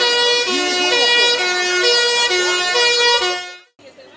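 Fire engine's two-tone siren, switching between a low and a high note about every half second, with a fainter wailing tone underneath. It cuts off shortly before the end.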